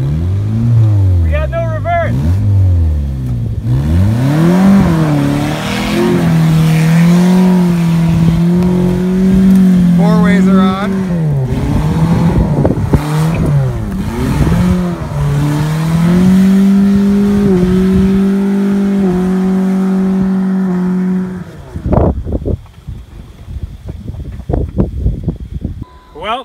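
A Saturn sedan's four-cylinder engine revs hard in rising and falling surges, then holds high revs for long stretches while the car crawls up a dirt trail. This is the sign of a failing, slipping transmission leaking fluid after the jumps. The engine cuts out abruptly about 21 seconds in, followed by a few sharp knocks.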